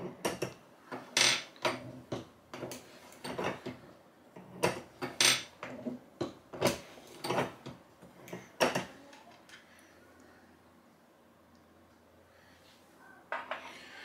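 Scattered metallic clicks and knocks from a Lee Classic turret press as its turret head and operating handle are handled by hand, over the first nine seconds or so.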